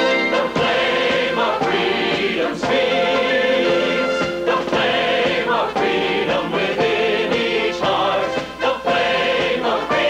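Theme music: a choir singing in phrases of a second or two over an instrumental backing.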